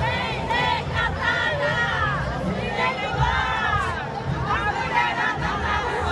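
A large marching crowd of demonstrators, many voices shouting and chanting at once.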